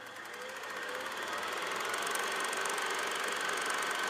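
Outro sound effect under the end logo: a hissy drone with a thin steady high tone that swells over the first two seconds and then holds.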